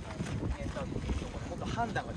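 Wind buffeting the microphone, with short distant voices calling out a couple of times.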